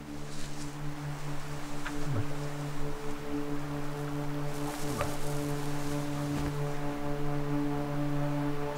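A low droning music bed of held notes, with short falling swoops about two seconds in and again near five seconds.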